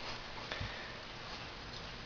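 A German shepherd sniffing faintly as he noses for a rubber toy lodged in a narrow gap.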